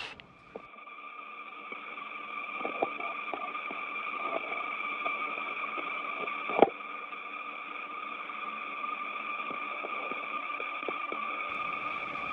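Steady electronic hiss and hum of an open radio communications channel, with two sustained high tones over it and faint ticks. A single sharp click comes about six and a half seconds in.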